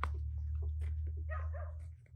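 A dog gives a short whine about a second and a half in, over a string of light knocks and clatter as a bamboo ladder is handled. A steady low rumble runs underneath.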